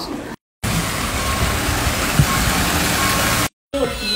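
A steady, loud rushing noise, set off by abrupt cuts to silence just before and just after it.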